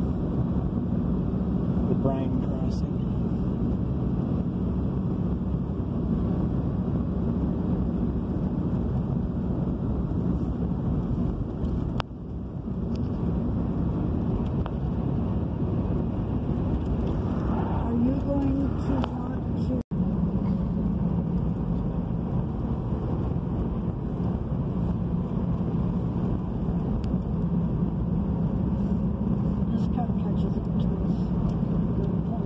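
Steady road and engine drone heard from inside a moving car's cabin, with a constant low hum; the sound cuts out for an instant about two-thirds of the way through.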